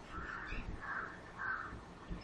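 Faint bird calls, three short calls about half a second apart.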